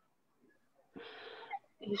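Near silence, then a short audible breath drawn in through the mouth about halfway through, just before speech begins.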